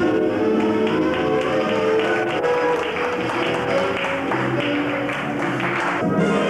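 Dance music playing, with a steady percussive beat.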